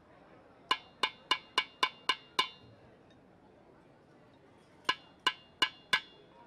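Small metal percussion struck by hand in a quick, even rhythm, each strike ringing briefly: seven strikes about three a second, a pause of about two seconds, then four more near the end.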